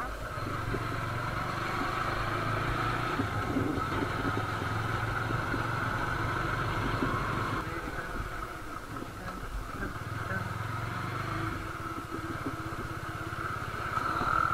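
Motorcycle engine running as the bike is ridden at low speed, with road and wind noise. The engine note is steady for the first half, fades about halfway through, and comes back briefly later on.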